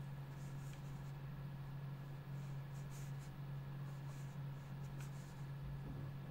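Faint scratching of a Sakura Pigma pen drawing short strokes on sketchbook paper, over a steady low hum.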